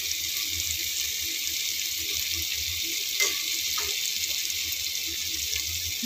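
Onion-tomato masala frying in oil in a steel kadhai, a steady hiss of sizzling, with a couple of light clicks from the steel ladle about three seconds in.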